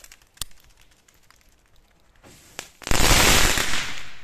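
A "Big Whopper" ground firework going off. A few faint ticks come first, then about three seconds in a loud burst of dense crackling lasts about a second and fades out.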